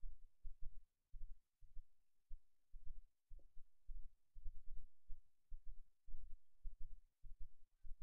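Low, uneven throbbing rumble from a Chevy 5.3-litre V8 idling at about 590 rpm on compressed natural gas, heard from inside the cab. The pulses come two or three a second, with short gaps between them.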